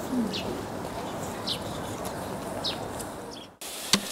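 A small bird chirping: short, high, falling notes repeated about every second and a bit, over a steady low background noise. A short sharp click near the end.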